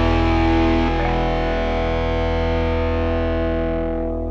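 A Jackson RR3 electric guitar plays through heavy distortion, holding sustained ringing chords over a deep, steady bass line. The chord changes about a second in, then dies away near the end.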